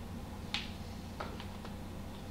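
Plastic Blu-ray cases being handled: one sharp click about half a second in, then three lighter clicks, over a steady low hum.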